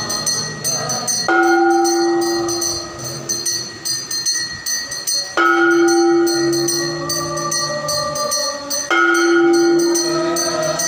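A conch shell blown in long held notes that swell up suddenly three times, about a second in, about five seconds in and near the end, over continuous rapid ringing of temple hand bells during aarti worship.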